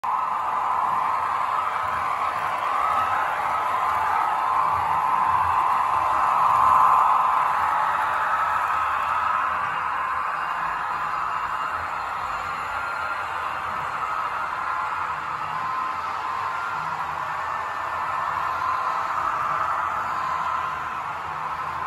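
HO-scale model trains running on a layout, a steady rolling whir of small wheels on metal track and electric motors, swelling to its loudest about six or seven seconds in.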